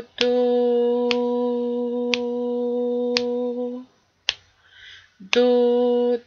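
A voice sings the syllable "do" on one steady pitch, holding it for about four beats as a whole note in a rhythm-reading exercise. It stops for about a beat and a half, then comes back in on the same note near the end. A sharp click marks the beat about once a second, like a metronome.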